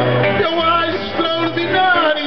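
Acoustic guitar strumming the accompaniment of a Portuguese 'cantar ao desafio' (improvised sung duel), with steady bass notes changing about every half second and a man's singing voice over it.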